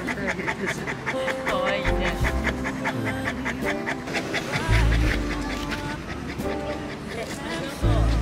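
A Saint Bernard panting quickly and steadily, several breaths a second, over background music. A loud low rumble comes in about five seconds in.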